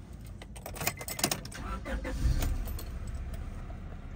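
Car keys jangling and clicking in the ignition during the first second or so, then the low steady running of a 1999 Honda Accord SiR wagon's DOHC VTEC four-cylinder engine as it is started and settles to idle.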